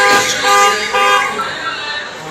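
Car horn honking in three short blasts in quick succession, with a high warbling tone wavering above it that stops along with the last honk.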